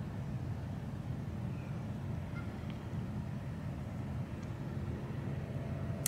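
Quiet outdoor background noise: a steady low rumble with no distinct events, and a faint steady hum joining near the end.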